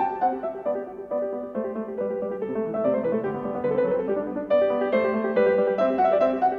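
Background piano music: a gentle melody of steadily held notes over a simple accompaniment.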